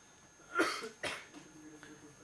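A person coughs twice in quick succession, the first cough the louder.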